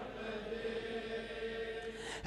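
A quiet lull in a man's chanted mourning elegy (a Shia majlis recitation over a microphone), with only one faint steady held note.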